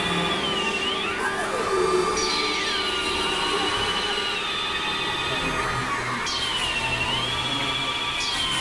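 Novation Supernova II synthesizer playing a dense, noisy drone of many held tones. A high tone swoops down and back up several times, and lower pitches slide downward in the first couple of seconds.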